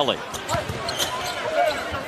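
Basketball game sound from an arena broadcast: steady crowd murmur with a few short sharp sounds of the ball bouncing and players on the hardwood court.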